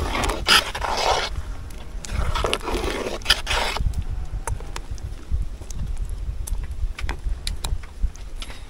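A metal ladle stirring and scraping around a large aluminium cooking pot of thick stew: two long scraping strokes in the first four seconds, then a few light taps of the ladle.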